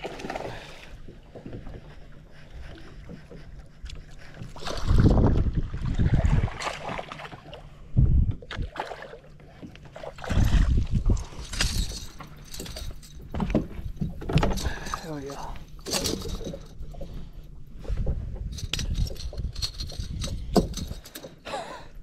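A small bass being reeled in and swung aboard a bass boat. The fish and tackle make a run of sharp clicks and knocks, thickest in the middle, and dull thumps of handling noise come every few seconds.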